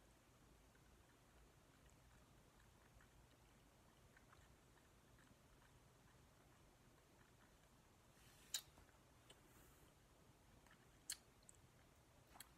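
Near silence with faint mouth clicks from sucking a lollipop, and two sharp clicks about eight and a half and eleven seconds in.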